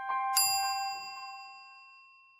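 Bright chime of a logo sound effect: a second, brighter strike about a third of a second in over an earlier bell-like tone, then a long ring that fades away.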